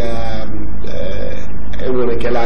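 A man's voice making a drawn-out vocal sound rather than clear words, over a steady low hum.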